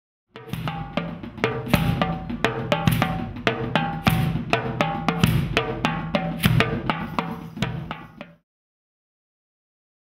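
Drums and timpani struck with mallets in a loose, many-player studio percussion jam, the hits coming at a steady beat. The playing stops suddenly about eight seconds in.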